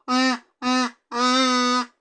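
A kazoo being played: three notes on the same pitch, two short ones and then a longer held note.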